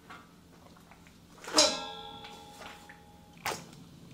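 Metal cookware struck once by a utensil about a second and a half in, ringing on with several clear tones for over a second. A short knock follows near the end.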